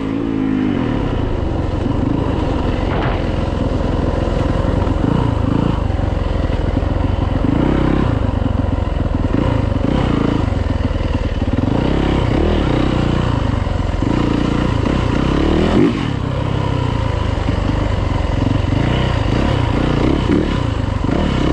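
Yamaha YZ450F's four-stroke single-cylinder engine heard from on board while riding. The revs rise and fall constantly with the throttle, with a brief drop about four seconds before the end.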